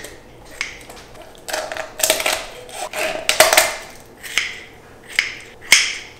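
Kitchen shears snipping and crunching through the rib bones along a raw turkey's backbone, cutting it out to spatchcock the bird. Roughly ten sharp snips come at an irregular pace, some in quick pairs.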